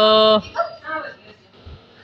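A voice calling a long, drawn-out "hello" on one held pitch, breaking off about half a second in, followed by brief soft talk.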